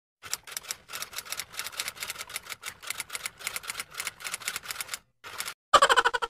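Typewriter typing sound effect: rapid key clacks, about eight a second, for about five seconds. A short pause follows, then a louder clatter with a ring near the end.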